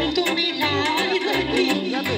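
A saxophone plays a heavily ornamented folk melody live over a Korg Pa800 arranger keyboard's accompaniment, with a steady bass-and-drum beat.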